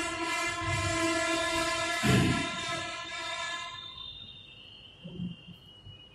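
A long, steady horn blast, heard from outside, made of several pitches at once like a train horn. It sounds for about four seconds and then fades away, with a single dull thump about two seconds in.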